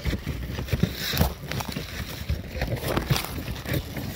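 Irregular footsteps and scuffs on an asphalt-shingle roof, with a low rumble on the microphone.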